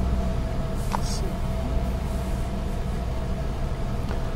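Car engine idling steadily at about 900 rpm, still cold after being started. Heard as a steady low drone from inside the cabin.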